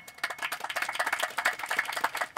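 Audience applauding: many quick, irregular claps.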